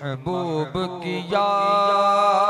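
A man's solo devotional chant in the style of a naat recitation into a microphone. The voice runs in short melodic phrases, then holds a long steady note from about halfway through.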